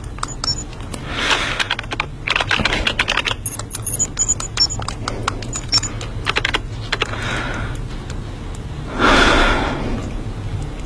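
Quick, uneven clicking of typing on a computer keyboard. A louder noisy whoosh comes about nine seconds in.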